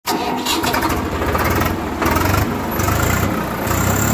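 An engine running loud with rapid low pulsing, shifting in tone several times.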